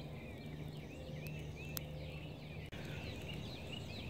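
Small birds chirping faintly in the background, many short rising-and-falling notes several a second, over a low steady hum. A single sharp click a little under two seconds in.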